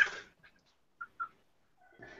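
A brief laugh right at the start, then two faint, very short high blips about a second in.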